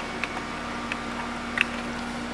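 Steady low hum of a digital press standing idle and powered on, with three faint clicks as its control-panel buttons are pressed.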